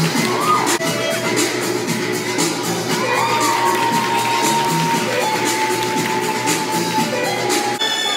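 Show music with a steady beat and an audience cheering and shouting over it during a circus balancing act, with a long high note held through the second half.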